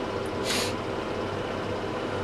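A single short, hissing sniff through a congested nose about half a second in, from someone with a head cold, over a steady low background hum.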